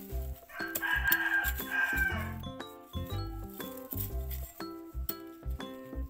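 A rooster crows once, starting about half a second in and lasting under two seconds, over background music with a steady beat.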